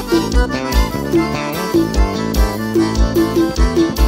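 Piseiro band playing an instrumental passage led by accordion, with sustained chords and melody over a steady kick-drum beat.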